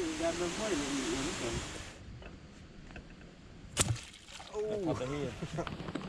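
Low voices over a steady hiss that stops suddenly about two seconds in. A little before four seconds in comes a single sharp snap, a bowfishing bow being shot at a carp, then low talk again.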